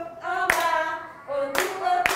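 Nursery assistants singing a song with long held notes while clapping their hands, two sharp claps about a second apart.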